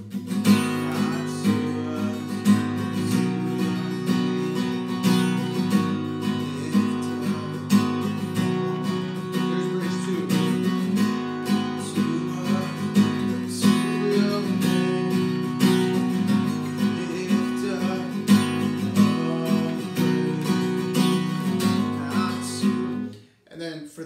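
Steel-string acoustic guitar with a capo, strummed in a steady rhythm to show a different strumming pattern on the song's chords; the playing stops abruptly near the end.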